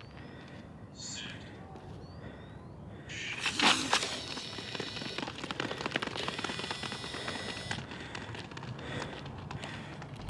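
A sharp crack of a start signal about three and a half seconds in, as sprinters drive out of their starting blocks. It is followed by several seconds of quick footfalls of spiked shoes on the rubber track, thinning out by about eight seconds in.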